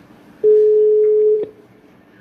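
Telephone ringback tone: one steady beep lasting about a second, starting about half a second in and ending with a click.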